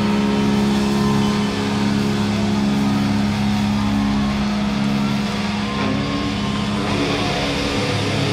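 Live metalcore band, its distorted electric guitars holding one steady, droning low chord, loud and sustained, with a change in the sound near the end.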